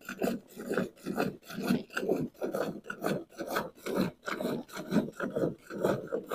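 Hand milking a cow: jets of milk squirting from the teats into a pail, with strokes in a steady rhythm of about four a second.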